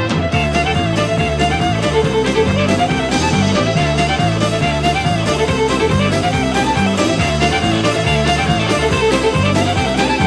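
Instrumental break of a country band: a fast fiddle solo in quick melodic runs over a steady band backing with bass.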